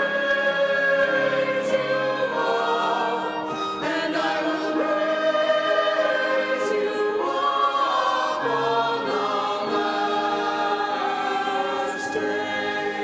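Church choir singing a slow hymn, with long held notes that move to a new chord every few seconds.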